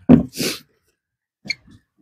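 A man's short grunt trailing into a breathy exhale, then a single light click about a second and a half in as a plastic cooler box lid is opened.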